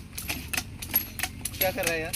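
A motorised orchard pesticide sprayer's engine running steadily, with sharp clicks about three to four times a second over it. A voice speaks briefly near the end.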